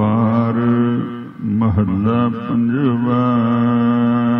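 Gurbani kirtan: a voice singing a slow, drawn-out melodic line that bends between notes, over a steady held drone from a harmonium.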